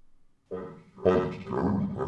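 A recorded spoken phrase played back through GarageBand for iPad's Audio Recorder 'Monster' voice effect, which turns the voice into a deep, altered monster voice. It starts about half a second in.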